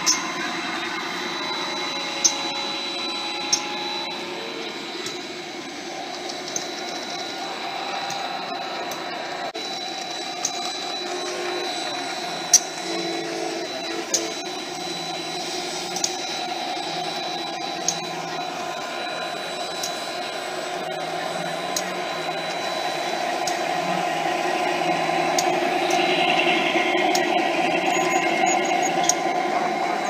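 Garden-scale model train running on outdoor track: a steady electric-motor whir with scattered sharp clicks, growing louder over the last several seconds as the train comes close.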